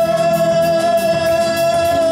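Live rock band playing with drums, electric guitar and saxophone, and singing: one long note is held steadily over an even cymbal beat.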